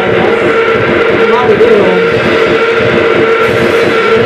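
Loud live noise-rock band playing: drum kit with cymbals, electric guitar and a singer's voice in a dense, unbroken wall of sound.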